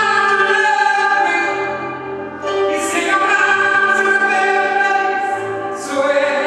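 A woman's powerful blues voice singing into a microphone in a church, holding long notes in two phrases with a short breath a little past two seconds in.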